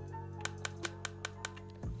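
Camera shutter firing a rapid burst of about ten quick, evenly spaced clicks in just over a second: an in-camera focus-bracketing sequence on an OM System camera, shooting a short focus stack, with background music underneath.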